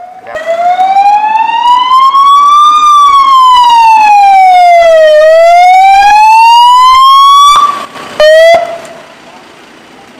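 Ambulance siren wailing very loudly in slow rising and falling sweeps, each sweep taking a couple of seconds. It cuts off about seven and a half seconds in, gives one short blip, then stops.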